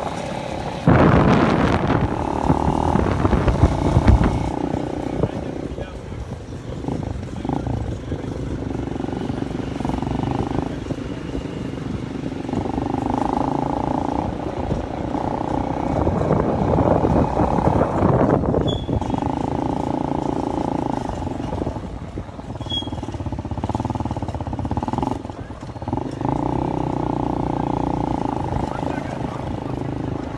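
People's voices, mixed with street noise.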